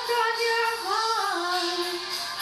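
A woman singing karaoke, holding a long sung note that briefly rises and falls about a second in, then settles on a lower held note.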